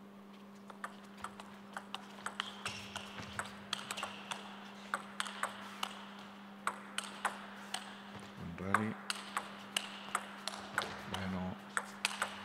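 Table tennis ball clicking sharply off the rubber bats and the table in a long rally, about three ticks a second. A steady low hum runs under it.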